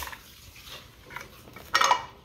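Hard plastic clicking and clattering as a Mini Brands capsule and its small pieces are handled, with one sharp click at the start and a louder clatter near the end.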